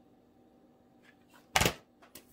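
Quiet room, then a single sharp clack about one and a half seconds in, like a hard object being set down or knocked on the table.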